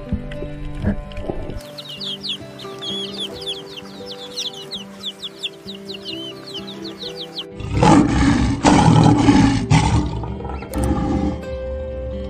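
Background music with many young chicks peeping in short high chirps for several seconds. Then, about eight seconds in, a loud growling roar lasting two to three seconds, which is the loudest thing heard.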